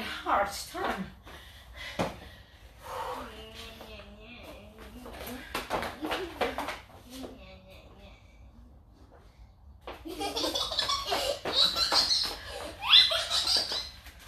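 People talking and laughing, with loud bursts of laughter in the last few seconds.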